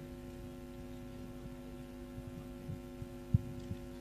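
Steady electrical hum from a sound system, with a few soft low thumps and one sharper thump a little past three seconds in.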